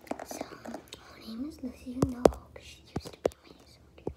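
A girl whispering close to a phone's microphone, with a few sharp taps of fingers on the phone, the loudest pair about two seconds in and two more about a second later.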